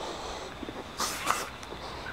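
A person sniffing freshly applied deodorant on his arm: one short sniff about a second in, over a faint steady background noise.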